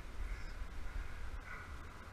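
A short, faint bird call near the end, over a low rumble of wind on the microphone.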